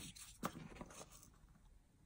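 Near silence with faint handling noise: a short click about half a second in and a few softer ticks as a plastic syringe and a cardboard part are handled and put down.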